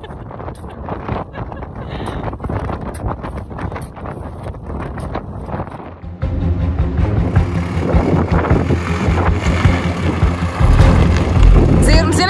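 Shovel and scoop scraping and striking sandy gravel. About halfway through this gives way to a 4x4's engine working hard under load, louder near the end, as a Toyota Land Cruiser Prado drives over the dug-down mound of sand and rock.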